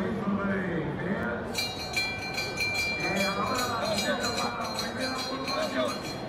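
Spectators' voices shouting along the course. From about one and a half seconds in, a bell is rung rapidly and keeps ringing almost to the end, as for a points lap in a roller speed skating points race.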